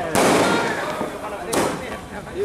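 Fireworks going off: two sharp bangs, the first just after the start and the second about a second and a half in, each fading away.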